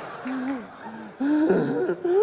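Short gasp-like vocal sounds from a man, louder and breathier in the second half, breaking into laughter.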